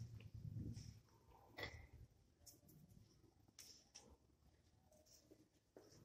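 Near silence, with faint soft scrapes and a few light clicks from fingers moving sand on the glass of a sand-art light table.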